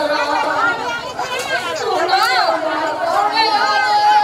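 Several people talking at once, with a man speaking over a microphone among them. About three seconds in, a steady held tone begins and carries on.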